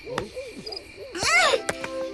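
Owl hooting several times in quick succession as a cartoon night-forest sound effect, followed about a second in by a louder, higher wavering call.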